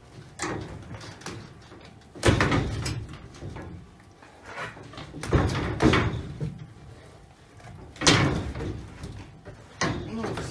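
Wire-mesh cage panel rattling and banging in several loud, sudden bursts as a young lioness tugs at a toy held against the wire.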